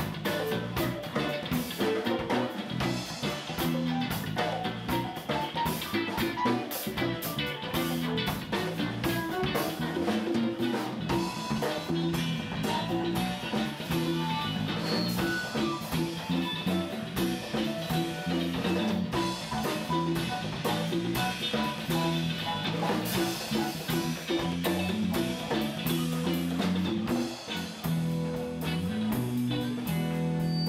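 Live band playing: electric guitar over a drum kit, with keyboard, in a continuous jam with drum hits throughout.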